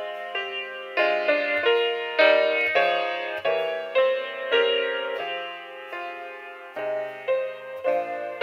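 Grand piano playing a slow prelude, chords and melody notes struck about once or twice a second, each ringing and fading before the next.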